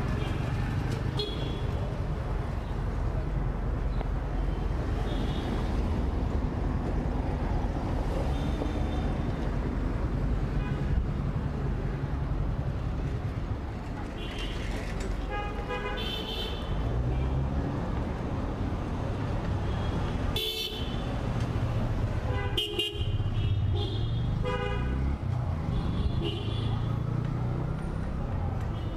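Street traffic: a steady low rumble with vehicle horns honking several times, most of them in the second half.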